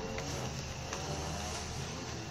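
Steady low background hum with a few faint clicks, as of small makeup items being handled on a table.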